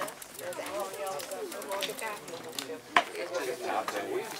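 Indistinct talking of people in the background, with one sharp click about three seconds in.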